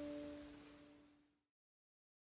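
Double-strung harp strings ringing on after a plucked chord, several notes dying away together and fading to silence about a second and a half in.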